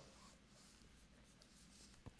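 Near silence: room tone with faint light rustling, such as paper being handled.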